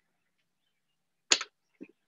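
A single short, sharp click about a second and a half in, from props being handled. The rest is dead silence, with a faint brief vocal sound near the end.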